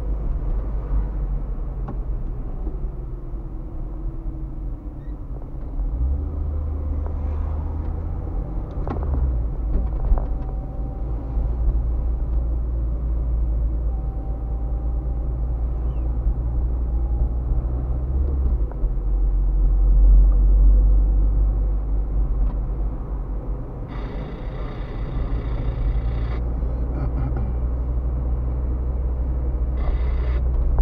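Car driving in city traffic, heard from inside the cabin: a steady low rumble of engine and tyres on the road, swelling to its loudest about two-thirds of the way through. A brief higher-pitched sound comes in for a couple of seconds near the end.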